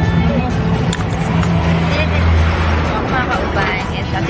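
Engine of a small passenger vehicle running with a steady deep hum, heard from inside its open-sided cab while it moves. Voices chatter over it.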